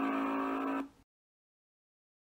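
A steady held note from an end-card sound effect, cutting off suddenly about a second in.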